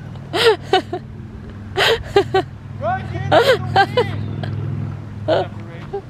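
Young children's voices: several short, high-pitched shouts and squeals during outdoor play. Underneath runs a steady low hum.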